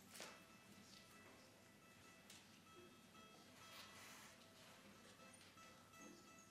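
Near silence: faint room tone with a few soft clicks and rustles.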